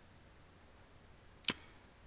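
Near silence, broken by a single short, sharp click about one and a half seconds in.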